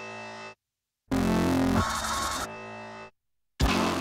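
Dramatic electronic trailer music: a loud held chord that drops to a quieter sustained layer, then cuts off abruptly into silence. This repeats, and a new sharp hit begins near the end.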